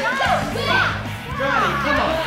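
Excited, overlapping voices of children and adults calling out over one another, with background music and a steady low bass coming in a moment after the start.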